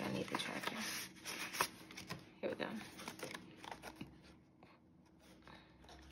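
Clear plastic cash envelopes and paper banknotes rustling and crinkling as they are handled, with irregular small clicks and scratches. A low voice murmurs briefly near the start and again about halfway through.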